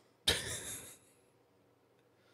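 A single short, breathy burst from a man's voice about a quarter of a second in, fading out within a second.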